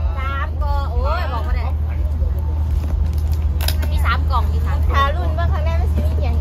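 Women's voices talking and exclaiming over a steady low rumble, with a brief sharp crackle about three and a half seconds in.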